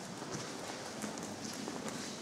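Footsteps clicking irregularly on a stone floor inside a church, over a low room hum.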